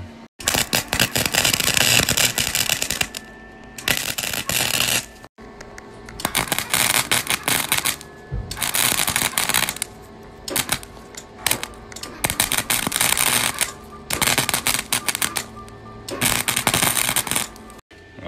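Chicago Electric wire-feed welder arc crackling and spitting as a test bead is laid on sheet metal, in about eight runs of one to three seconds with short breaks between. The power has just been turned down after the first setting burned right through the metal.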